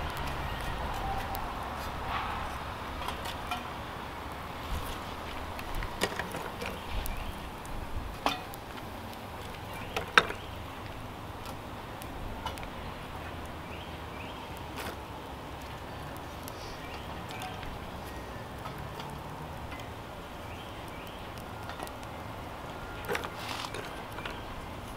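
Wood fire burning in a rocket stove: a steady rush with scattered crackles and pops, more of them in the first half, the sharpest about ten seconds in.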